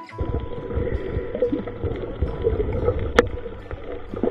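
Muffled underwater sound picked up by a camera held underwater: a steady low rushing rumble with small crackles, and one sharp click about three seconds in.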